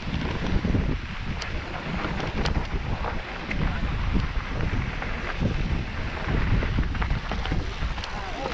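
Wind buffeting the microphone of a mountain bike riding down a dirt forest trail, over an uneven low rumble from the tyres and frame, with scattered clicks and rattles as the bike goes over the rough ground.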